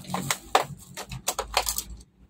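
A quick, irregular run of sharp clicks and light taps, about eight in two seconds, from small tools and objects being handled and rummaged through on a repair bench. A steady low hum runs underneath.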